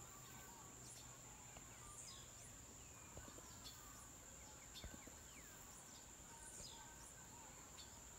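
Faint countryside ambience: a steady high insect drone with scattered short bird calls falling in pitch.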